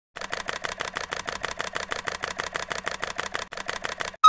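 Rapid, even mechanical clicking, about ten clicks a second, in a steady run that stops at the end.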